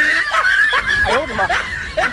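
Canned laughter sound effect: snickering and chuckling voices, several overlapping.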